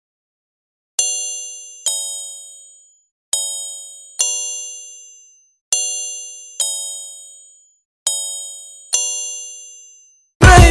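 A bell-like chime ringing in four pairs of strikes, a second or so apart within each pair, each strike ringing out and fading before the next.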